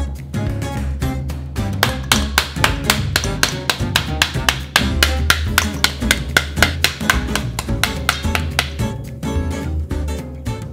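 Acoustic guitar background music over a fast run of knocks, about four a second: a wooden spoon beating the back of a halved pomegranate to knock the seeds out into a steel bowl.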